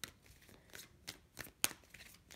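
Tarot cards being shuffled by hand: a few separate sharp card snaps, the loudest about a second and a half in.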